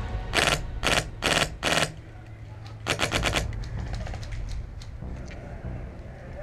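Airsoft rifle firing full auto: four short rattling bursts in quick succession, then a longer burst about three seconds in, followed by a few fainter scattered snaps.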